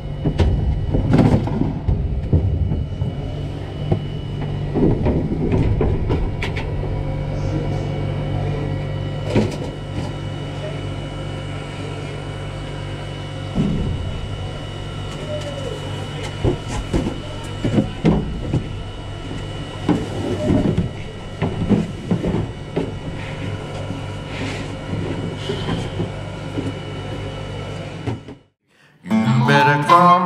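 Music gear being handled in a trailer: boxes and cases knocking and scraping over a steady mechanical hum. Near the end the sound cuts out and acoustic guitar music starts.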